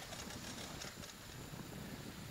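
Faint, steady background noise with no distinct sound events.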